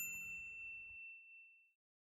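A single bright ding, struck once and ringing out with a few high, clear tones that fade away over about a second and a half.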